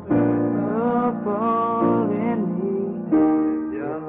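Slow piano music: held chords with a wavering melody line above them, the chords changing twice.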